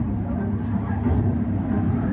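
Muffled ambience recorded inside a haunted-house attraction: a steady low rumble with no clear words.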